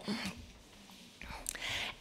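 A pause in a woman's talk at a lectern microphone: faint room tone, then a short intake of breath near the end.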